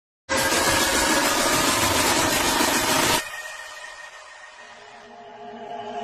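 A loud, dense rushing noise with faint steady tones under it, cutting off suddenly about three seconds in and leaving a quiet fading ring. Music starts to rise near the end.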